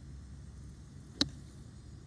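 A golf iron striking a ball on a three-quarter swing: a single sharp click about a second in.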